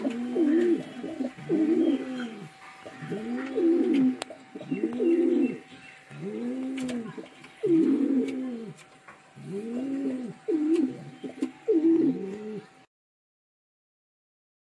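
Siraji pigeon cooing over and over: about ten rising-and-falling coos, a little over a second apart, cutting off suddenly near the end.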